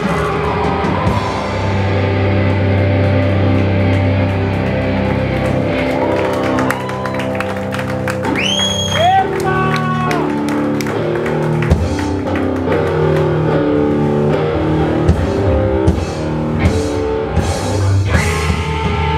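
Live hardcore band playing: distorted electric guitars, bass and drums, with chords changing in an even rhythm. A short rising pitched slide cuts through about halfway.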